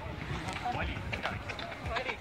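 Footfalls of several runners on a dirt path passing close by, with people talking among them.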